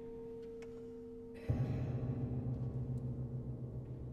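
Grand piano played with extended techniques. A held ringing tone fades away, then about a second and a half in comes a sudden, loud, low rumble in the bass strings that trembles and rings on.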